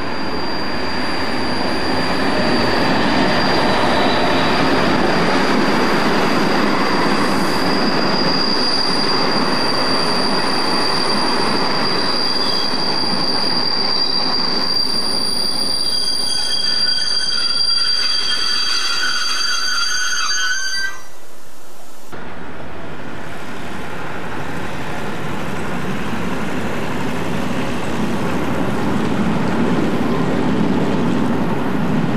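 Diesel-hauled passenger train passing at speed: a loud rumble of engine and rolling wheels, with a steady high-pitched wheel squeal over it. The sound cuts off abruptly about two-thirds of the way through and gives way to the quieter rumble of another train, which grows louder near the end.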